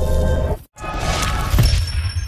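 Intro sting: music with a loud shattering, crashing sound effect, broken by a split-second silent gap about two-thirds of a second in, then a second hit near the end.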